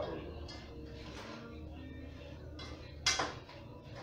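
One sharp, brief metal clank of cookware at the stove, a pot or utensil knocked about three seconds in, over a low steady background.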